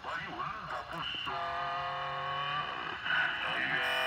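Tagalog talk-radio speech coming through a radio's loudspeaker: a word about a second in, then a long, steady held sound with a slight hum under it for about a second, then more of the same held sound near the end.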